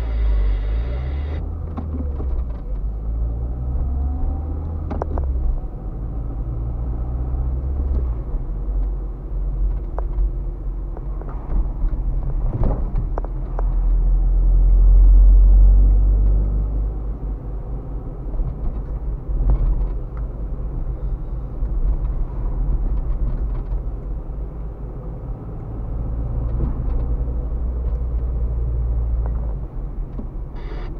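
Car cabin road noise picked up by a dashcam while driving: a steady low engine and tyre rumble that swells to its loudest around the middle, with a few short knocks from the road.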